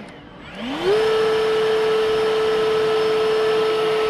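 EGO electric backpack blower's brushless turbine fan dropping almost to a stop, then spinning back up in a rising whine over about a second. It then holds a steady high whine at full speed.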